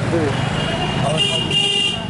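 A vehicle horn sounding in street traffic: one high, steady note held for well over a second, loudest near the end. A continuous low rumble of traffic runs underneath.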